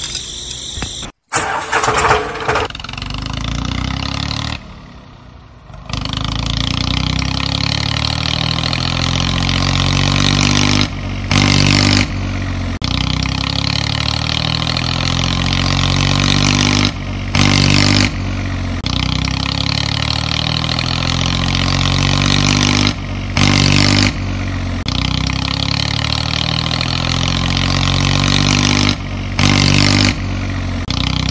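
A tractor engine starting about a second in, then running steadily. About every six seconds there is a brief break and a louder rev, the same pattern each time, like a looped engine sound.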